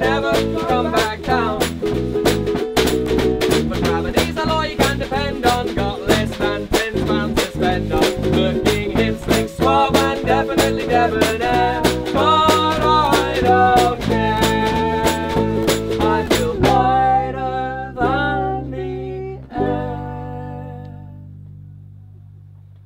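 A small band playing live: acoustic guitar, a second smaller strummed stringed instrument, and a snare drum and cymbal played with sticks, with singing. The drums stop about 17 seconds in, and the guitars end the song on a last strummed chord that rings out and fades.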